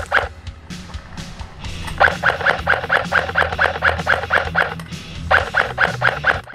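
Outro music: a quick repeating figure of about four notes a second over a steady low bass.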